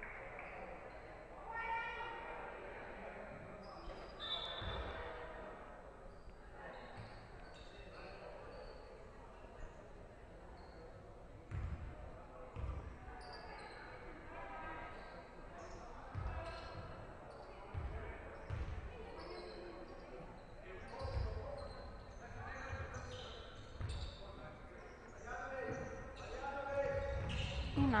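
A basketball bouncing on a hardwood gym floor, a dozen or so single thuds at uneven intervals, under indistinct voices echoing in a large sports hall.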